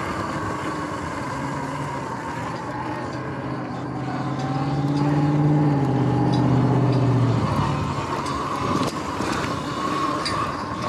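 Sur-Ron X electric dirt bike riding, its motor giving a steady whine over tyre and wind noise; the whine drops in pitch as the bike slows mid-way and climbs again as it speeds up near the end. In the middle a lower drone from nearby road traffic swells and then stops abruptly.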